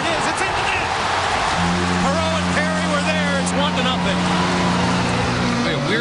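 Hockey arena crowd cheering a goal. About a second and a half in, the arena's goal horn starts, a steady low blare that holds for about four seconds before it cuts off.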